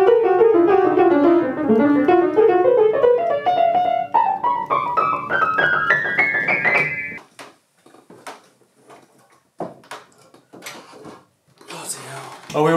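Upright pianola's strings sounding note after note in a rising run as a hand sweeps up the hammer action, pushing the hammers against the strings. After about seven seconds the notes stop, leaving scattered wooden clicks and knocks from the action.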